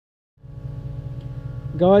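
Toyota 1UZ-FE V8 engine idling steadily at about 1,000 rpm, a low even rumble that begins about a third of a second in. At idle the engine runs fine, though its ECU has a faulty throttle position sensor circuit that makes it die under full throttle.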